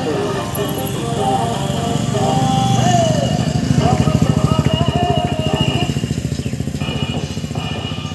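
A motorcycle engine running as the bike passes close by. Its fast firing pulse swells to its loudest about four seconds in, then fades. Music and voice from a loudspeaker play over it.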